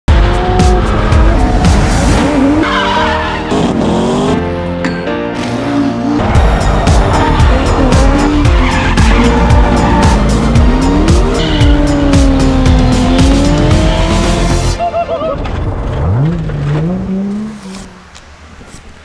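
Drift cars sliding, engines revving up and down and tyres squealing, with a music track over them. The loud part dies down about fifteen seconds in.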